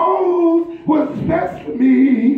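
Man singing a gospel song into a microphone, holding a long sung "oh" that breaks off about half a second in, then starting two shorter sung phrases.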